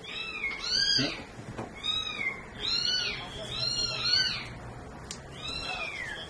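Repeated high-pitched animal calls, about six in all at roughly one a second, each rising and then falling in pitch.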